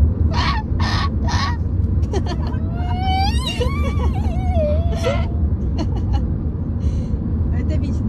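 Steady low road rumble inside a moving car's cabin. Three short breathy bursts come near the start, then a girl's wavering, whining vocal sound rises and falls from about three to five seconds in.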